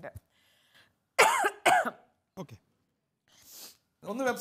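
A woman coughing: a few separate coughs with short pauses between them, the loudest a little over a second in.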